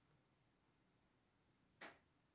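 Near silence: faint room tone, with one brief soft sound near the end.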